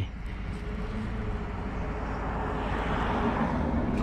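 Distant engine noise: a steady rushing with a faint low hum, swelling slightly about three seconds in.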